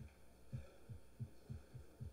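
A series of soft, low thumps, about six in two seconds at uneven spacing, over a faint steady hum.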